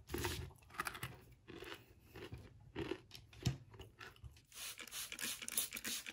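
Close-up crunching and chewing of granola eaten with skyr yogurt, in irregular bites, with one sharp low knock about three and a half seconds in. Near the end the crunching gives way to a denser, even crackle.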